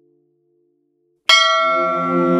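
Near silence, then a bell struck once about a second in, ringing on with many steady tones, with lower sustained tones joining just after as the music begins.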